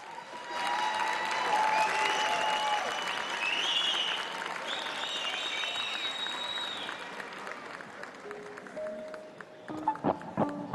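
Audience applause that swells about half a second in, with high wavering whistles over it, and fades after about seven seconds. Near the end the orchestra plays a couple of held notes.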